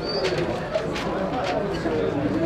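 Spectators chatting at a football match, with short high bird chirps over the voices.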